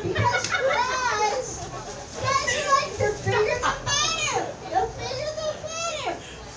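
A woman's high-pitched, wordless vocalizing: squeals and wails that swoop up and down in pitch, several in quick succession.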